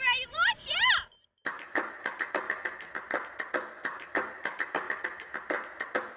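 A girl's excited high-pitched shout in the first second. Then, after a brief gap, a steady run of sharp claps or clicks at about two to three a second.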